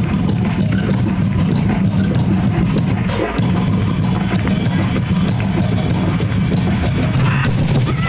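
Loud drum-driven music with a steady beat, the percussion accompanying a street dance.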